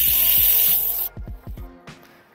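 Pressure cooker whistling: steam escapes through the weight valve as a loud hiss that cuts off about a second in, the sign that the cooker has come up to pressure. A few light knocks follow.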